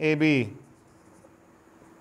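Marker pen writing on a whiteboard, a faint rubbing stroke, after a man's voice says "A B" at the start.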